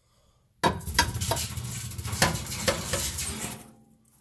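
Metal scraping and clinking in a fireplace from a hand-held fireplace tool, with many sharp clicks over about three seconds, dying away near the end.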